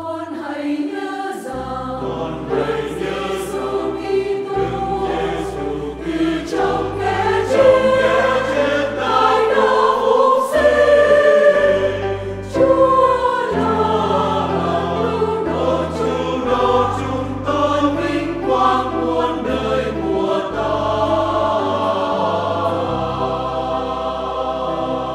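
Church choir singing a Vietnamese hymn, accompanied by piano and bass guitar, with sustained low bass notes that change every second or two. The singing swells loudest about eight to twelve seconds in.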